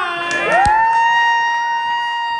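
A single high voice whooping, gliding up about half a second in to one long held note amid cheering. A single sharp knock, like a clap or a stamp, comes just as the note begins.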